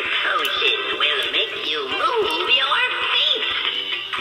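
Three-foot animatronic witch playing a song with a singing voice through its small built-in speaker while it dances; the sound is thin and tinny, with almost no bass.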